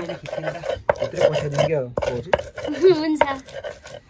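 Stone pestle grinding herbs on a flat grinding stone (sil-lauto), with irregular scraping and knocking strokes of stone on stone.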